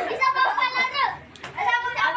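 Several children laughing and calling out excitedly in play, with a cough, and a brief lull in the middle.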